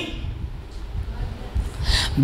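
A pause in a man's amplified speech: low hiss, then a short sharp intake of breath into the handheld microphone near the end.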